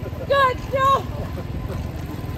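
Two short, loud whoops of celebration from a person, about half a second apart, over the steady low rumble of a small motor scooter engine idling.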